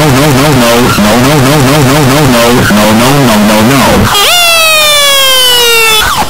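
Cartoon police-car sound effects. A pitched tone warbles up and down about three times a second for about four seconds, then a whine slides steadily down in pitch as the car drives off.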